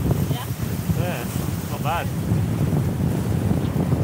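Wind buffeting the microphone over a steady rush of water past the hull of a Telstar 28 trimaran sailing at about six and a half knots.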